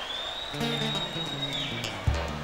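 Acoustic string instruments of a samba group strumming a few chords. The playing starts about half a second in and fades near the end.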